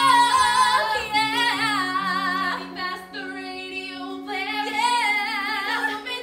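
A woman sings a musical theatre song, holding notes with vibrato. Steady accompaniment notes sound beneath her voice.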